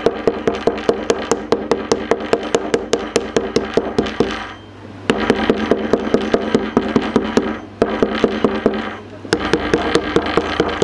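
Toothed metal meat-tenderiser hammer tapping rapidly on frozen fish cutlets on a cutting board, about five light strikes a second, with short breaks about halfway through and near the end. The pounding softens the frozen bait.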